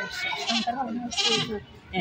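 A woman speaking Bengali in an interview, her voice rising and falling with short breaks.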